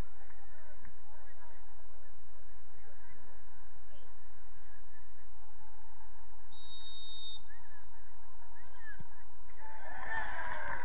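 Steady outdoor field noise with many faint short calls throughout, and a referee's whistle blown once for about a second, about six and a half seconds in.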